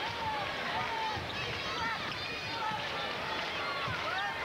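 Basketball arena crowd noise, with sneakers squeaking on the hardwood court and voices calling out during play.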